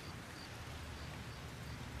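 Quiet, steady background ambience with a faint low hum: a lull with no voices.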